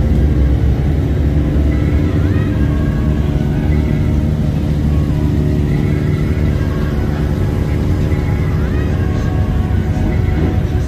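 Motorcycle engines running with a steady low rumble.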